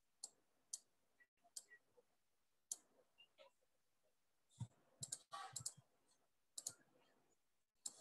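Near silence broken by faint, scattered clicks and taps of a stylus on a drawing tablet, with a small cluster about five seconds in.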